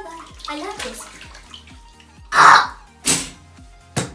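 Water sloshing in a bathtub packed with water balloons as they are moved about, with two louder splashes about two and a half and three seconds in, over background music with a steady beat.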